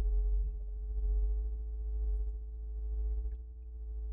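Synthesized drone of several steady held tones over a deep low rumble, swelling and easing slowly and thinning slightly near the end: an eerie magic sound effect.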